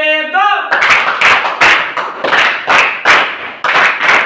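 A group clapping hands in unison, a steady beat of about three claps a second, starting just under a second in. Before it, the group's chanted line ends on a held note.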